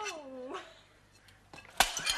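A short cry from a person that slides down in pitch, then near quiet, then a single sharp knock near the end.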